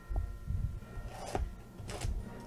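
Hands handling and opening a shrink-wrapped cardboard box of card packs on a table: low knocks from the box, with two brief rustles of the wrapping, about a second in and near the end.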